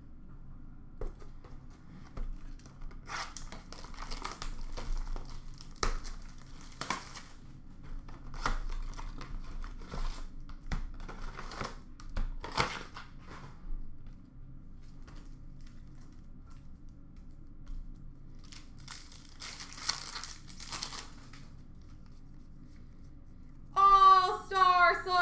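Foil hockey card pack wrappers being torn open and crinkled by hand, in several bursts of tearing and rustling with short pauses between them, quieter for a few seconds past the middle.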